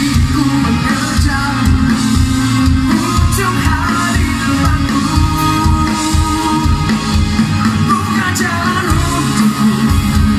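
A rock band playing live: a male lead vocal sings over amplified electric guitar, bass guitar and a drum kit.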